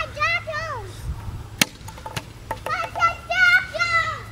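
A toddler's high-pitched voice calling out in short wordless bursts near the start and again through the last second and a half, with one sharp knock about one and a half seconds in.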